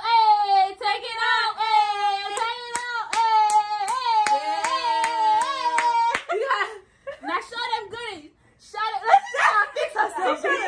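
Women's voices singing long, high held notes while hands clap a steady beat, about two to three claps a second. Both stop about six seconds in, then short bursts of talk and laughter follow.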